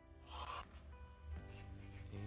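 Soft background music with sustained notes, and about half a second in a brief rasp of a blade slicing through denim.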